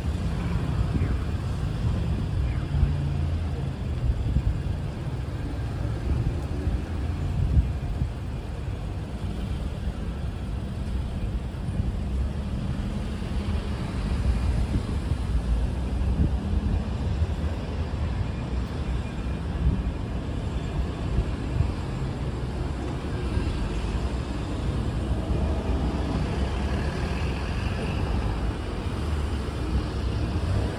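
City street traffic: cars and taxis passing close by, a steady low rumble of engines and tyres.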